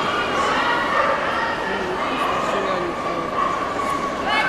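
Dogs barking and whining over the chatter of a crowd, with a long drawn-out whine in the second half.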